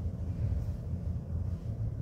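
Low, steady rumbling background noise with no speech.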